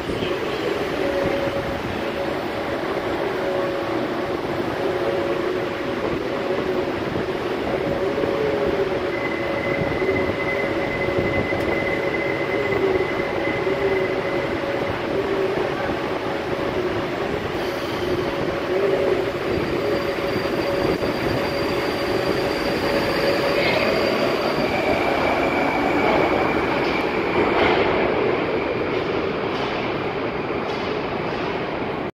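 New Moscow metro train running: a steady rumble with a held whine, and higher squealing tones from the wheels that come and go. It grows a little louder near the end.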